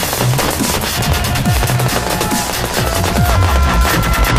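Fireworks going off in a rapid, continuous string of bangs and crackles, mixed with electronic music with a heavy pulsing bass beat.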